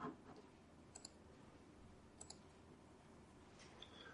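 Near silence with a few faint clicks from a laptop's keys or mouse, two pairs about a second apart and a single one near the end, as the presentation is advanced to the next slide.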